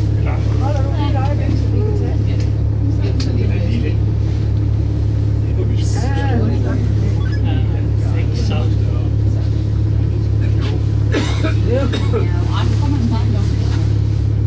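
A steady low drone runs throughout, with quiet, indistinct voices talking briefly a few times: about a second in, around the middle, and again a few seconds later.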